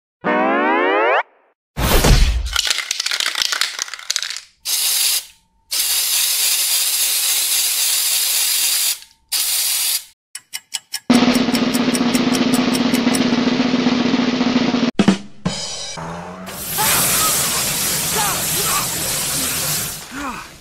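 A string of cartoon sound effects over music. It opens with a quick rising, boing-like glide, then come several bursts of aerosol spray-can hiss and a rapid run of clicks about ten seconds in. Near the end there is a long rush of sprayed water.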